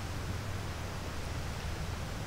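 Steady outdoor background noise: a low rumble under a faint even hiss, with no distinct sound standing out.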